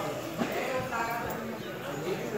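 A crowd of pilgrims walking and talking, their voices overlapping, with a sharp knock about half a second in.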